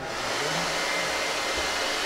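Handheld hair dryer switched on and blowing steadily: an even rush of air with a faint high motor whine, directed at a man's hair.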